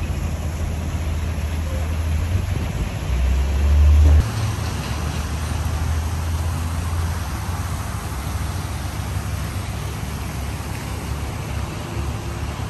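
Street ambience of steady traffic rumble from cars passing on nearby roads. A louder low rumble swells about three seconds in and cuts off abruptly just after four.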